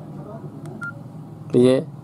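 Key presses on a Samsung keypad phone: two small clicks a little before the middle, the second with a short, high key beep from the phone, as the prompt on screen is dismissed.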